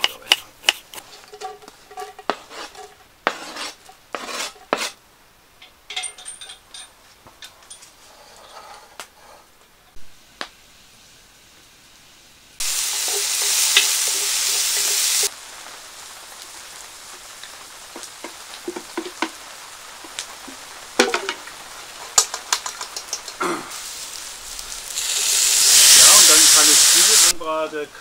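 A kitchen knife chops onion on a wooden cutting board in a run of sharp knocks. Then diced onion hits hot fat in a cast-iron pot and sizzles loudly all at once. It goes on frying more quietly while a wooden spatula scrapes and stirs, and near the end a second loud burst of sizzling rises.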